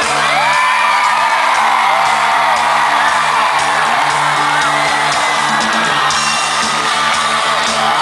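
Live pop-rock band playing loudly through a concert PA, with a crowd close by whooping and cheering over the music.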